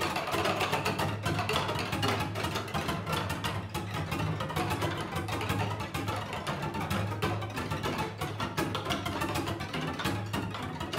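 String quintet of two violins, viola and two cellos playing a dense, churning passage: rapid, scratchy bowed strokes in the upper strings over a held low note in the cellos.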